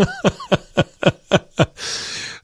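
A man laughing: a run of about seven short chuckles, each falling in pitch, then a long breath out near the end.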